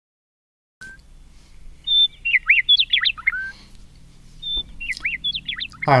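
A small bird chirping: two runs of quick, sharply rising and falling notes, one about two seconds in and another near the end, over a faint steady hum.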